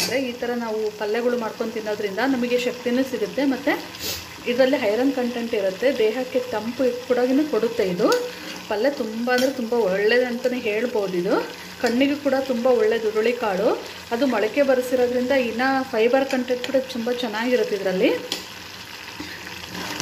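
A metal spoon stirring and scraping sprouted horse gram in an aluminium pot while it sizzles on the heat. The stirring stops for a moment several times and pauses longer near the end.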